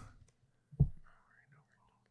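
Faint whispering under the breath, broken and scattered, with one brief low sound just before it, a little under a second in.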